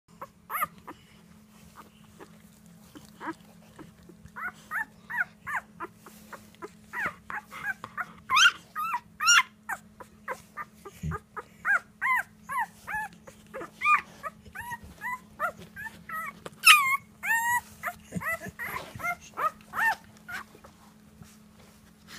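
Newborn chocolate Labrador retriever puppy whimpering and squeaking: a few isolated squeaks, then from about four seconds in a rapid run of short, high-pitched cries, with a steady low hum underneath.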